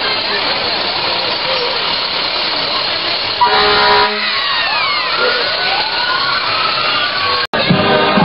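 A fire engine's air horn gives one short blast about three and a half seconds in. Then the siren winds up and down in overlapping wailing glides, until it cuts off abruptly shortly before the end. A steady rushing noise runs underneath.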